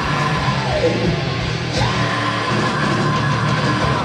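Heavy metal band playing live at full volume, with distorted guitars, bass and drums under a shouted vocal. A long note is held through the second half.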